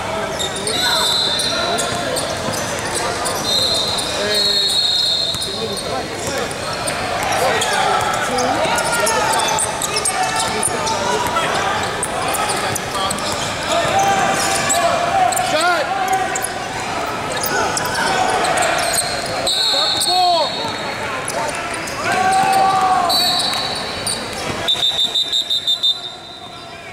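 Basketball game sounds in a large gym: a ball bouncing on the hardwood floor and players' and spectators' voices echoing in the hall.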